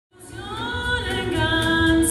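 A woman singing held, wavering notes with vibrato, with music low underneath; the sound fades in from silence at the very start.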